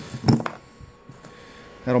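A couple of short knocks and clicks near the start as a round pot magnet and a small steel pin are handled and set down on a cardboard box, then a man starts speaking near the end.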